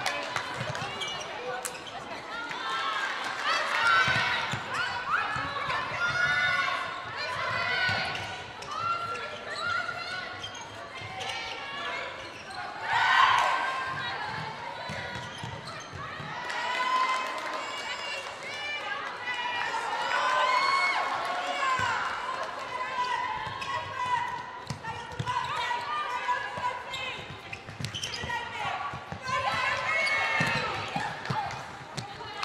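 Live court sound of an indoor netball game: shoes squeaking on the court floor and players calling to each other over a murmuring crowd, with a louder moment about thirteen seconds in.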